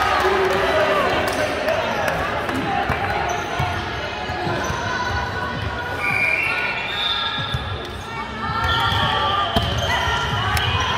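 Volleyball being played in a large echoing gym: players' and spectators' voices, short high squeaks of shoes on the hardwood court, and a few sharp ball hits, the loudest near the end as the ball is served.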